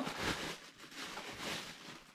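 Clear plastic packaging bag crinkling and rustling unevenly as it is handled, fading out near the end.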